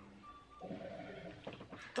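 A faint, wavering voice-like hum or murmur lasting about a second, with a word spoken near the end.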